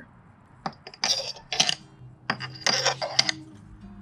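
Metal hand tools clinking and rattling as they are handled, in a few short clusters starting about a second in.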